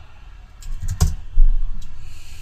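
A few sharp clicks of a computer keyboard and mouse, with a low thump about a second and a half in.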